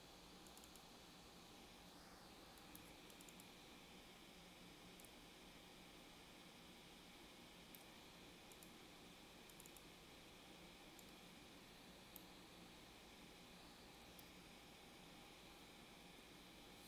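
Near silence: a faint steady room hum with a few scattered soft computer mouse clicks.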